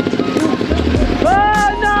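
Trials motorcycle engine revving hard as the bike tries to climb out of a rocky stream. A long, high shout of "no!" comes in the second half.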